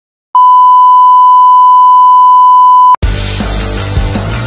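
Television test-pattern tone: one loud, steady beep at a single unchanging pitch. It starts just after the beginning, lasts about two and a half seconds and cuts off abruptly. Loud music starts straight after it, near the end.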